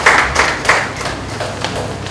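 Audience applause thinning out, a few sharp claps standing out early on before it fades away.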